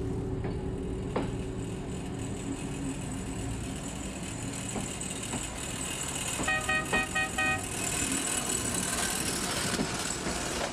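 Small motorized rail cart's engine running steadily, with a horn giving a quick burst of about six short toots a little past halfway.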